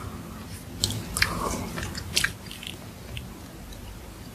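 Close-miked mouth biting into and chewing soft cream-filled cube bread, with a few sharp wet clicks about one and two seconds in.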